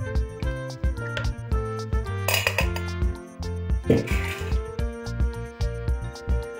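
Background music with a steady beat, over which kitchenware clatters twice, about two and a half and four seconds in: the metal mesh sieve and plastic jug being handled after straining the drink.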